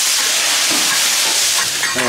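Cured pork and fern shoots stir-frying in a large hot wok as a spatula turns them: a loud, steady hiss of oil sizzling.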